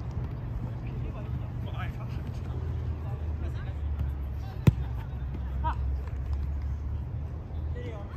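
Scattered shouts of players over a steady low rumble, with one sharp thud of a football being kicked a little under five seconds in.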